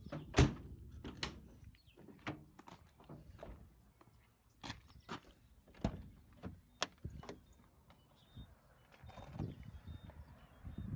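A Peugeot Partner van door shut with a loud thunk about half a second in, followed by scattered clicks and light knocks.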